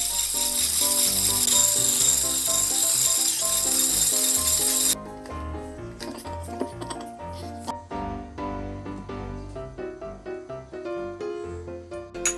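Electric hand mixer whirring steadily as it beats egg whites toward stiff peaks, over background music. The mixer sound cuts off abruptly about five seconds in, leaving only the music.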